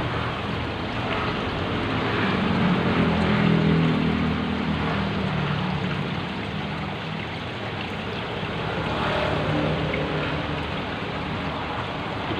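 Steady rush of running, splashing water from the aquarium's filter and aeration. A low hum swells between about two and five seconds in, then fades.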